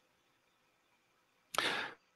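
Near silence, then about one and a half seconds in a short, sharp intake of breath into a close microphone, under half a second long, just before someone speaks.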